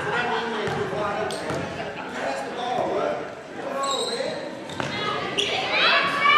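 A basketball bouncing a few separate times on a hardwood gym floor, heard under the voices of players and spectators in a large, echoing gymnasium.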